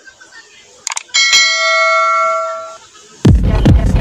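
Sound effects of a subscribe-button animation: a few quick clicks, then a single bell ding that rings for about a second and a half and fades away. Loud electronic music with a beat comes in near the end.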